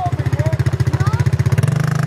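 A quad (ATV) engine idling nearby with a steady, even putter.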